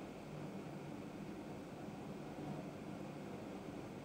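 Faint steady hiss with a low hum: room tone.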